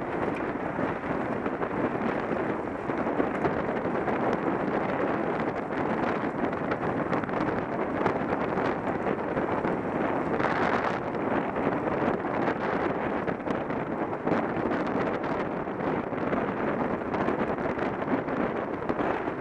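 Wind rushing over a helmet-mounted camera's microphone as a road bike rides at race speed, a steady noise that turns briefly louder and hissier a little past halfway.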